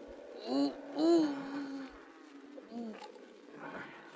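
A wounded man, played by a voice actor, groans and cries out in pain as a stinging dressing goes on his leg wounds. There is a long strained cry about half a second in and a shorter groan near three seconds.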